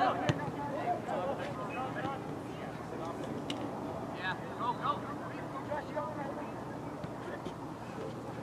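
Distant calls and shouts from players and spectators at a soccer match, one near the start and another cluster about four to five seconds in, over steady outdoor background noise.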